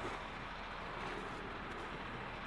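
Faint, steady outdoor background noise with no distinct events.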